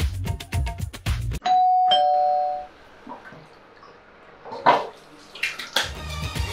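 Background music with a heavy beat stops short, and a doorbell chimes a two-note ding-dong, the second note lower, ringing out for about a second. A few short sharp sounds follow near the end.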